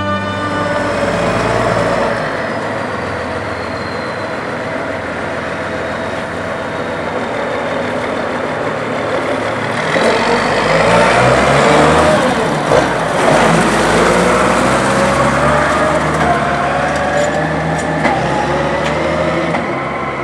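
A Case IH tractor's diesel engine running under load as it drives. Its pitch falls and rises again between about ten and fourteen seconds in.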